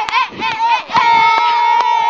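Young girls' voices shrieking in quick rising-and-falling squeals; about a second in, one high voice holds a long, steady squeal.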